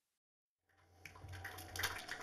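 Audience applause in a cinema, coming in out of silence about half a second in and growing louder, with a low steady hum beneath it.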